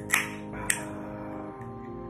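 Ring-pull tab of an aluminium drink can cracked open: a sharp click with a brief hiss right at the start and another short click under a second later, over steady background music.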